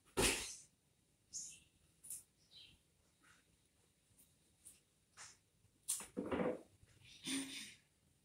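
Scattered short rustles and taps of cut flower stems and leaves being handled and set into a vase arrangement, with a couple of fuller handling noises near the end.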